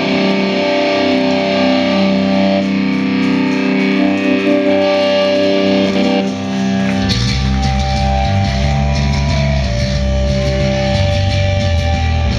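Live distorted electric guitar playing held chords of a hardcore punk song's intro, with no bass underneath; about seven seconds in, bass and drums come in and the full band plays loud.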